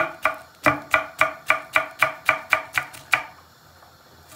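A kitchen knife slicing green peppers on an end-grain wooden cutting board: a steady run of knocks, about four a second, as the blade hits the wood. It stops about three seconds in.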